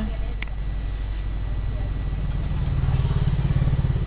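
A low, steady mechanical rumble with a fine pulsing texture that grows louder in the second half, with a single click about half a second in.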